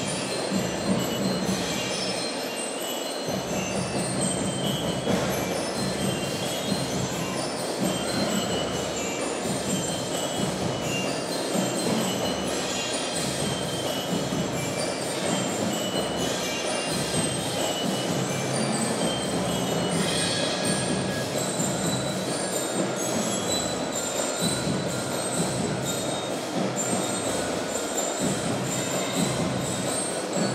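Children's percussion ensemble playing a sustained passage of ringing metallic percussion, a continuous shimmering wash with many light strikes over a steady low drum roll.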